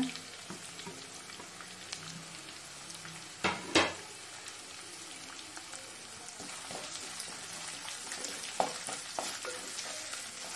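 Sliced shallots frying in mustard oil in a clay pot, a steady sizzle, while a wooden spatula stirs them against the clay. A couple of sharp knocks come about three and a half seconds in, with a few lighter taps near the end.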